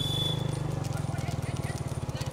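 A motor running with a fast, even low throb. A high, steady whistle blast stops about half a second in.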